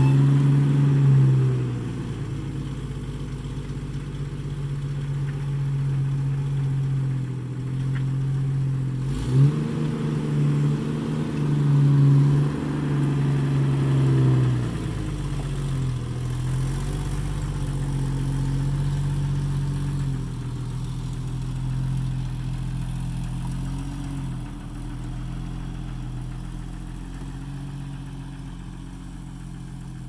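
1993 Jeep Wrangler's 4.0-litre straight-six engine running, mostly at a steady idle. There is a sharp knock about nine seconds in, and engine speed then rises briefly and falls back. The sound grows fainter toward the end.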